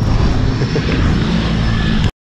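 Steady drone of a propeller aircraft engine, loud and continuous.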